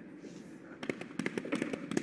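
Something being flapped rapidly through the air: a quick, irregular run of sharp snaps starting about a second in.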